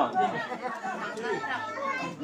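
Indistinct chatter of several voices talking at once, quieter than the close talk on either side.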